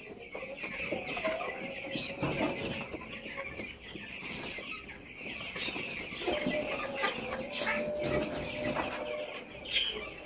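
A flock of young chickens cheeping and peeping continuously, many short high calls overlapping, with scattered small knocks and a faint steady hum underneath.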